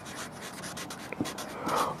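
Felt-tip marker writing on lined notebook paper: a run of short, scratchy pen strokes as a word is written.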